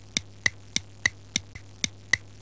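Clock ticking sound effect, about three sharp ticks a second, marking a time skip.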